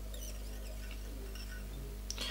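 Faint scratchy ticks of fly-tying thread being wrapped and drawn tight to catch a black marabou tail onto a hook, over a steady low electrical hum.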